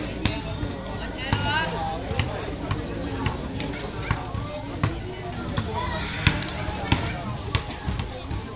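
A basketball dribbled on a concrete court, bouncing about twice a second, over the chatter of a watching crowd.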